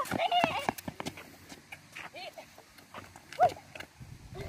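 Boys' brief shouts and calls, with scattered knocks of a basketball bouncing and footsteps on the court surface.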